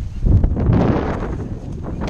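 Wind buffeting an action camera's microphone: a steady, loud rushing noise heaviest in the low end.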